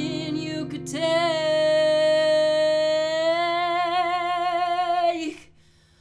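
A woman singing one long held note, wavering slightly toward its end, over a ringing acoustic guitar chord. Both cut off about five seconds in.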